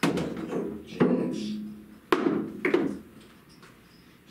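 Pool balls knocking on a pool table: four sharp clacks and thuds about a second apart, each ringing briefly as the balls strike each other and the cushions.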